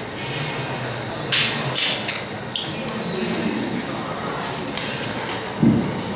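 Dumbbells being handled in a gym: a few short hissing breaths, then a single dull thump near the end.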